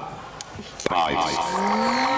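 An electronic intro jingle starts abruptly over the hall's speakers about a second in, after a moment of room sound, with a rising glide in pitch and a steady high tone, leading into a rhythmic beat.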